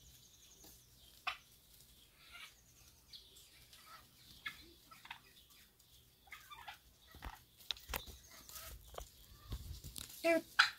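Turkeys fighting: faint, scattered clucks and purring calls with a few short sharp clicks, and a low rumble near the end.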